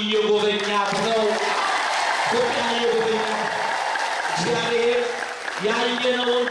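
A man's voice through a microphone in chanted, sung delivery, holding long steady notes. From about a second in until about four and a half seconds, a wash of clapping runs beneath it.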